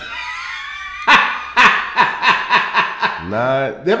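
Men laughing hard: a high, squealing laugh falling in pitch, then a quick run of loud, short bursts of laughter.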